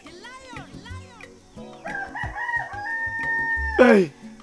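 A rooster crowing: two short rising-and-falling calls in the first second, then a long stepped crow whose final note is held and drops away sharply near the end, the loudest moment.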